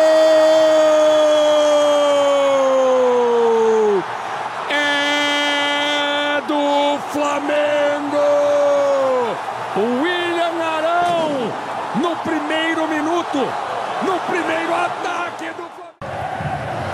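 Football commentator's long, drawn-out "Gooool" cry for a goal, held on one steady pitch and falling away about four seconds in. A second long held shout follows, then fast excited commentary over steady stadium noise.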